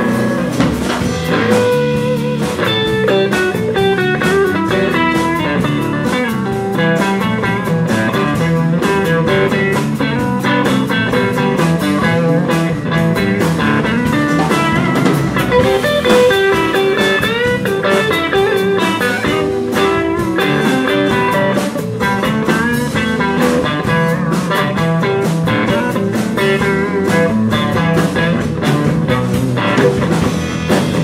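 Live blues band playing an instrumental passage: lead electric guitar with bent notes over acoustic guitar, bass and drums.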